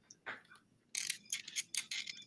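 Light clicking and rattling handling noises, a microphone and its cable being fumbled with and plugged into the computer, starting about a second in.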